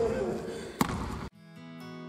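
A basketball bounces once on a hardwood gym floor a little under a second in. The sound then cuts off abruptly and acoustic guitar music begins.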